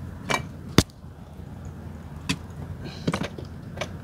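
Several sharp plastic clicks and knocks, the loudest about a second in, as an ICOM diagnostic cable's OBD plug is handled and pushed into the car's OBD port under the dashboard.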